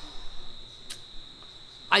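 A faint, steady high-pitched tone in a pause between a man's words, with one short click about halfway through; the man's voice comes back just before the end.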